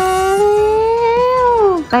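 A woman's voice holding one long drawn-out, sing-song vowel (a stretched 'maaa'), rising slightly in pitch and then falling away near the end.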